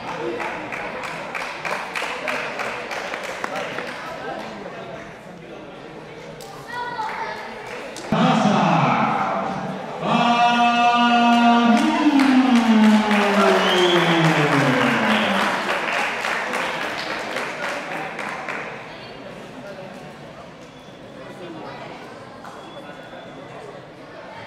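An audience clapping in a large hall. From about eight seconds in, a voice calls out over the applause in long drawn-out notes, the last one sliding down in pitch.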